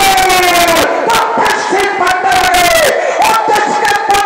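A male Ramlila actor in the role of Ravana gives long, drawn-out amplified cries into a microphone through a loudspeaker, about four in a row, each held on one pitch and falling away at the end. Rapid sharp knocks sound throughout alongside the cries.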